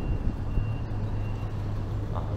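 Steady low rumble of motor traffic with a faint high beep repeating about every two-thirds of a second.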